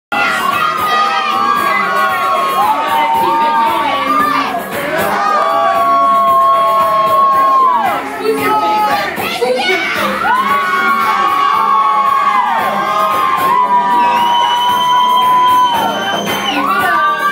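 Loud crowd shouting and cheering, with long high-pitched screams held for one to three seconds at a time over the din.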